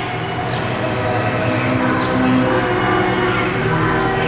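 A steady, loud mechanical drone with several held pitches and no pauses.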